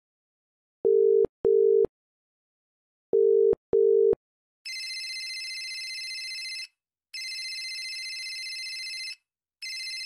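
Telephone ringback tone, two double beeps of a low steady tone, as an outgoing call rings. Then, from about halfway, the called mobile phone rings with an electronic ringtone in three bursts of about two seconds each, quieter than the beeps.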